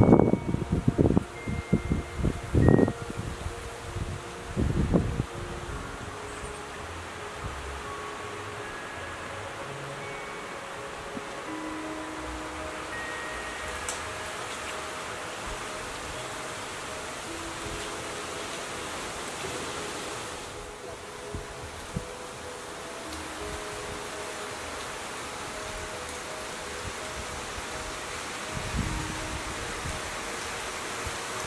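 Wind arriving through tall woodland trees: strong gusts buffet the microphone for the first few seconds, then give way to a steady rush of wind through the leaves and branches, with one more short gust near the end.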